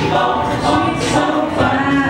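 A cappella vocal group singing in harmony, voices holding and moving through chords, with a crisp beat about twice a second.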